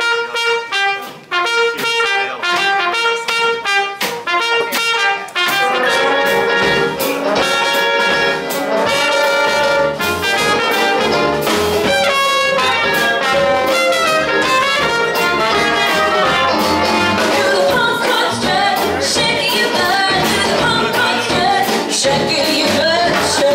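Traditional New Orleans jazz band with trumpet, clarinet, upright bass and piano playing the opening of a song. Short, detached notes for about the first five seconds, then the full band with bass comes in together.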